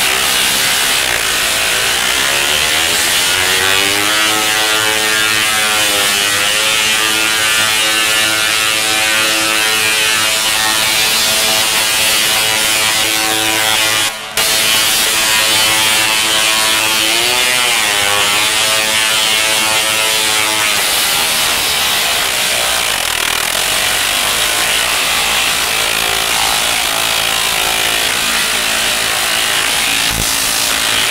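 3-million-volt Tesla coil firing: high-voltage arcs breaking down the air in a loud, continuous buzzing crackle. Through the middle of it runs a pitched buzz that glides down and back up twice, and the sound cuts out briefly about fourteen seconds in.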